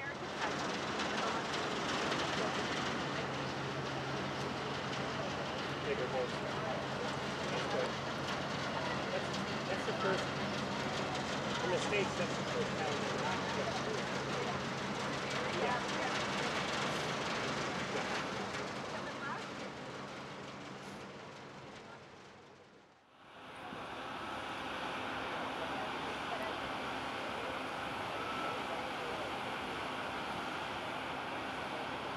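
Large cruise ship moving slowly into a canal lock: a steady low hum from her engines over the rush of churned water, with faint voices in the background. The sound dips out briefly about 23 seconds in, then resumes.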